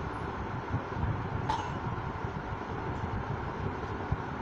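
Steady low rumbling background noise with no speech, and one brief faint sound about one and a half seconds in.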